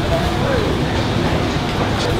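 Steady rumble of a train passing on the railway line just beside the restaurant.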